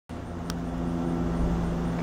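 A steady low hum and rumble, with several steady low tones like a running engine or machine, and a single sharp click about half a second in.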